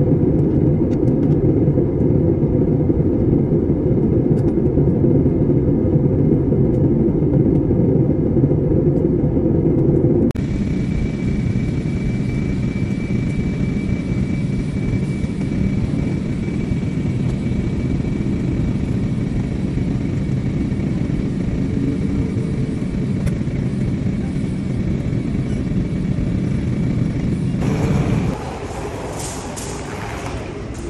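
Steady engine and airflow noise inside a jet airliner's cabin in flight. About ten seconds in it changes abruptly to a slightly quieter steady noise with a faint high whine, and it changes again near the end.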